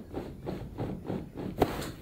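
A run of faint soft ticks and rustling, then a single sharp click about one and a half seconds in: a small neck joint pop at the end of a towel traction thrust to the cervical spine.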